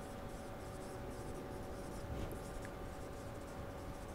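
Marker pen writing on a whiteboard: faint, short scratchy strokes one after another, with a faint steady hum underneath.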